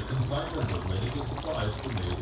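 Pork pieces in red gravy bubbling in a wok, a steady liquid gurgle, with a low voice murmuring underneath.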